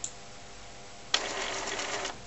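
Desktop inkjet printer running: a faint click, then a sudden burst of mechanical whirring and rattling from the print mechanism that starts about a second in and lasts about a second.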